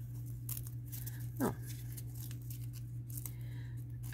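Crinkling and rustling of a strip of double-sided tape and its backing liner being handled and peeled, a string of short scratchy crackles, over a steady low hum.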